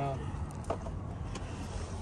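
Steady low rumble of an idling vehicle engine, with a few light clicks from items being handled.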